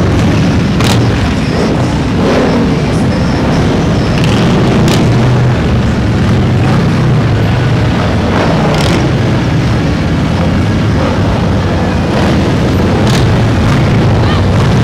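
A procession of large touring motorcycles riding past at low speed, their engines giving a loud, steady low rumble, with a few short sharp cracks over it.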